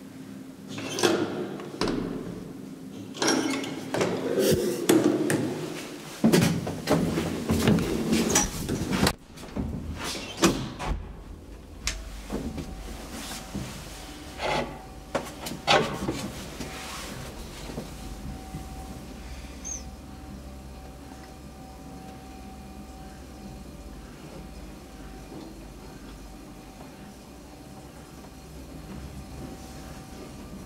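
Old Graham Brothers traction elevator: a run of clicks and knocks from its doors and gate for about the first twelve seconds, then the car travelling with a steady low motor hum and a faint steady whine.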